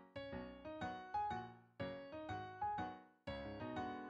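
Solo piano music: notes and chords struck about twice a second, each left to ring and fade.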